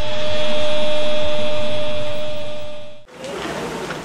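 Closing sound effect of a promo jingle: a loud held synth tone over a hiss, swelling and then slowly fading, cut off abruptly about three seconds in. After the cut there is a quieter stretch of outdoor background noise.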